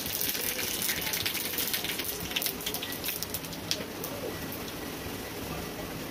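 Cumin seeds and curry leaves sizzling and crackling in hot fat in a small tadka (tempering) pan over a gas flame. The crackle is thickest in the first few seconds and eases off toward the end.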